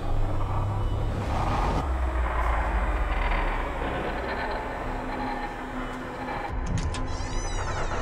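Horror-film soundtrack: a steady low rumbling drone under dark, noisy ambience, with a high wavering screech rising in near the end.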